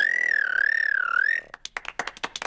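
A cartoon child's high-pitched squealing 'special noise', one long note wavering slowly up and down in pitch for about a second and a half. It is followed by a short patter of clapping.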